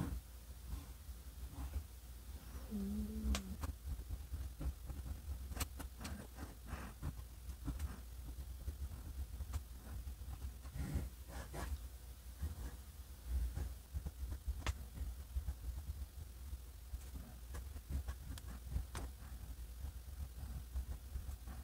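Faint scratching of a soft, springy fountain pen nib writing cursive on lined paper, in irregular short strokes.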